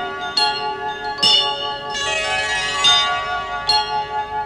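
Music with ringing bells: four bright bell strikes, unevenly spaced, over sustained held tones.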